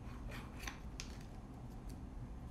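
About half a dozen short, crisp clicks or snips close to the microphone, irregularly spaced, over a faint steady background hum.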